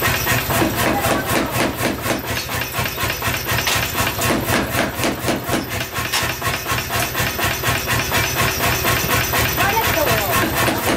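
A 75 kg power hammer pounds a red-hot steel billet on its anvil: a rapid, steady run of heavy blows, several a second, over the constant low hum of the machine's motor.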